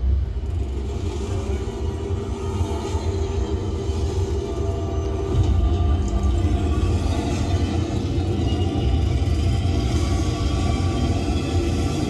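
Deep, steady rumble of the moving studio tram, with faint music playing over it from the onboard speakers.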